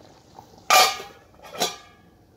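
Glass pot lid set down on a steel cooking pot of boiling rice: a sharp metallic clank with a brief ring, then a second, lighter clank about a second later.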